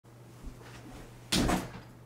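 A person dropping into a desk chair: one short thump with a rustle about halfway through, after a faint click.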